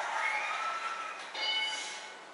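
Game show audio from a television: music, with a set of steady high electronic tones starting about one and a half seconds in, then fading.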